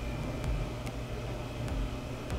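Steady low background hum of room tone, with a couple of faint ticks.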